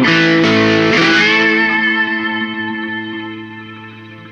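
Solo slide guitar: a chord struck just before this moment, with the slide gliding its notes up in pitch about a second in, then left ringing and slowly fading.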